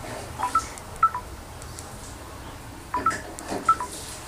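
Smartphone's short two-note electronic tones, a rising pair followed about half a second later by a falling pair, sounding twice, as its in-display fingerprint sensor is used to unlock the screen.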